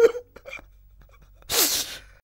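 A man's distressed vocal outburst: a short falling moan right at the start, then a sharp, breathy burst about a second and a half in.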